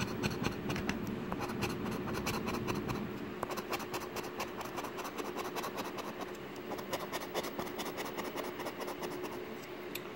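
A coin scraping the coating off a paper scratch-off lottery ticket in many quick, short strokes, with a faint steady hum underneath.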